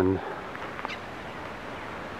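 A man's drawn-out spoken "and", held on one pitch and ending just after the start. It is followed by a steady faint outdoor hiss, with one faint short high sound about a second in.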